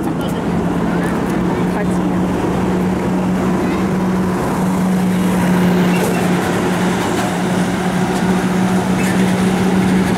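Road traffic with a steady low engine hum from vehicles on the street, mixed with people's voices.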